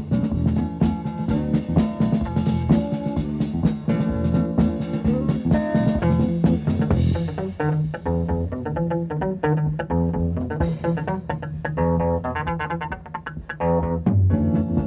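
Live funky instrumental by an electric guitar, bass guitar and drum trio, the guitar playing quick runs of notes over bass and drums.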